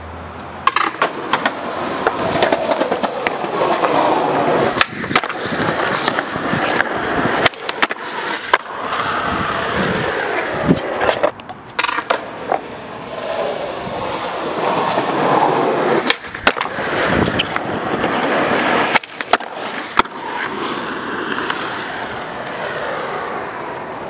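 Skateboard wheels rolling over concrete and asphalt, broken about a dozen times by sharp clacks of the board striking the ground.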